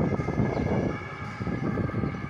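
Street noise with a low rumble, most likely traffic passing on the road, that eases off about a second in.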